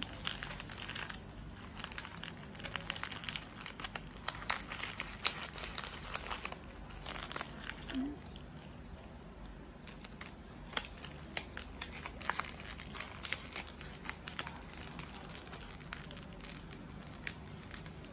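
Wrapping paper around a small handmade paper-flower bouquet crinkling and rustling in the hands as it is folded and tied, in irregular crackles.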